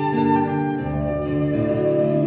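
Live music: a man and a woman singing long held notes together, the pitch of the notes shifting about a second in.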